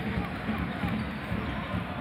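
A basketball being dribbled on a hardwood court, over the steady noise of an arena crowd.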